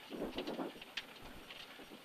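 Faint, muffled murmur of a voice, with a single sharp click about a second in, over a low hiss.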